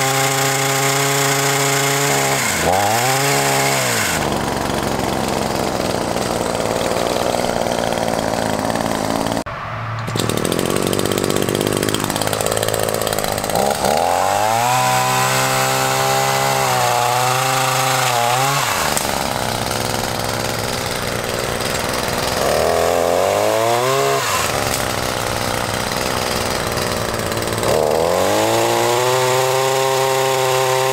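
Echo PAS-2620's 25.4 cc two-stroke engine driving a power pruner chain saw, revved up and down several times as it cuts through branches, dropping back toward idle between cuts.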